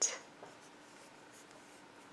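Faint rubbing and scratching of black yarn drawn over a metal crochet hook as a single crochet stitch is worked, with a soft tick about half a second in.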